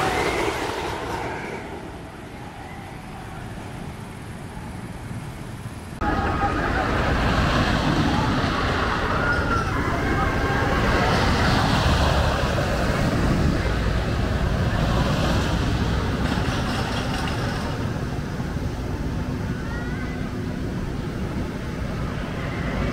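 Phoenix wooden roller coaster train running along its wooden track, with riders yelling. One pass fades away in the first couple of seconds; after a sudden cut about six seconds in, another pass rumbles loudly, swelling and easing several times.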